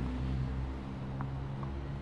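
Steady low engine hum of nearby traffic, with two faint ticks a little over a second in.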